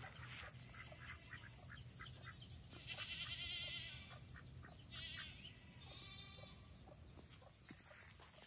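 Faint goat bleating in the background: one wavering call of about a second roughly three seconds in, then two shorter calls near the five- and six-second marks, over a low steady outdoor hum.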